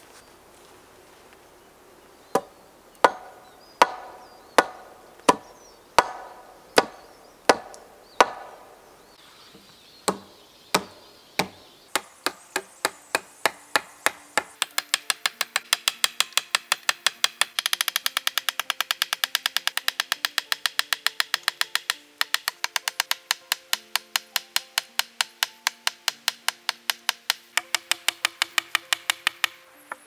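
A hatchet used as a hammer, striking a wooden pole where it meets a tree trunk. At first come single heavy blows well under a second apart; from about halfway in comes a fast, even run of lighter blows, three or four a second.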